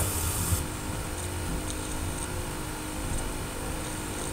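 Steady low hiss with faint steady hum tones and no distinct events: background noise.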